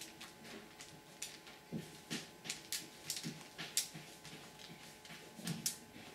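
Faint, irregular crinkling and rustling as a hand presses and smooths a sheet of paper down onto shaving cream spread on aluminium foil, with a few soft low thuds among the crackles.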